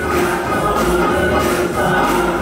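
Gospel choir singing, with instrumental accompaniment.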